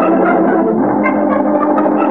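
Organ music bridge between scenes of an old-time radio drama: sustained chords that move to a new chord a little under a second in.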